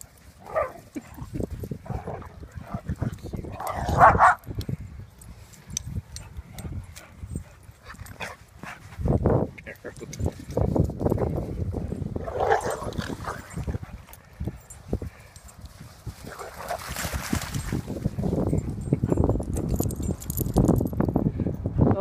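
Small dogs playing and scuffling, with a few short barks: the loudest about 4 seconds in and another about 12 seconds in, over a low rumble on the microphone.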